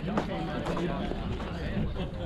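Indistinct voices of people talking nearby, over a steady low background rumble.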